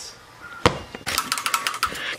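A tossed rubber playground ball hitting the pavement with one sharp knock, then bouncing in a run of quick knocks that come closer and closer together.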